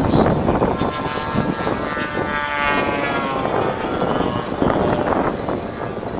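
Radio-controlled model warbird's propeller engine flying past. Its droning note rises and then falls in pitch between about one and three and a half seconds in, over a steady rushing noise.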